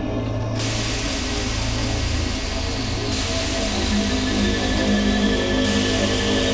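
Dark ambient background music made of sustained low drones, with a hissing noise layer that comes in about half a second in.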